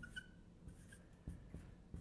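Dry-erase marker writing on a whiteboard, very faint, with a few short squeaks in the first half second.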